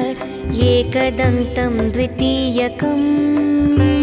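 Instrumental interlude of Indian devotional music. A plucked-string melody slides between notes over low drum strokes, then settles on a long held note near the end.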